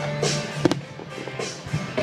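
Aerial fireworks bursting over music with held notes: one sharp bang about a third of the way in.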